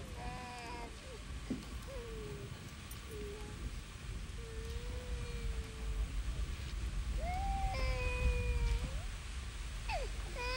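A cat meowing and yowling: several plaintive calls that slide in pitch, short ones at first, then two long drawn-out calls in the second half, over a steady low rumble.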